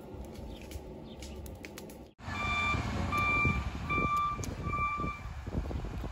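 A reversing alarm beeps four times at one steady pitch, evenly spaced a little under a second apart, over a low outdoor rumble. Before it, about two seconds in, the sound cuts out briefly.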